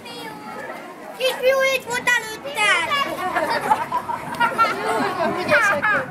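Children's voices calling out and chattering during a playground game, several high-pitched voices overlapping, with louder shouts about a second in and again near the end.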